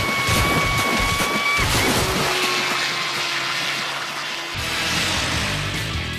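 Cartoon water sound effects: a sudden rush of splashing water as a figure is towed through a lake, with a steady high whine for about a second and a half, then a lower held tone over continuing water noise. Background music comes back in about four and a half seconds in.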